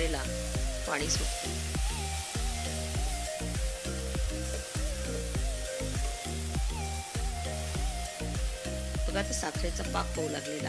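Grated fresh coconut and sugar sizzling in a nonstick kadai as a spatula stirs it, cooking down while the sugar melts into syrup, under background music with a steady beat.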